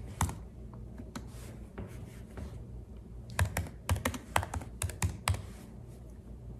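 Typing on a computer keyboard: a few scattered key taps, then a quick run of about ten keystrokes in the second half.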